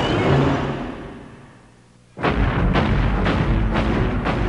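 Cartoon soundtrack of dramatic music under heavy, regular booming thuds, the giant mechanical beetle's stomping footsteps. It fades out to a brief lull about two seconds in, then comes back suddenly at full level with the thuds about twice a second.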